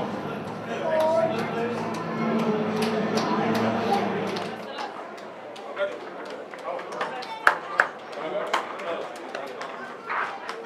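Indistinct voices and chatter echoing in a stadium tunnel, with a low hum underneath that stops abruptly about halfway through. After that the talk is quieter, broken by a few sharp clicks and taps; the loudest comes a little past the middle.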